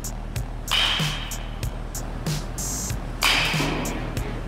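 Background music with a steady beat, with two louder swishing crashes about a second in and near the end.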